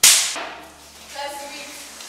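A single sharp crack, sudden and loud, that dies away over about half a second, followed about a second later by a brief voice.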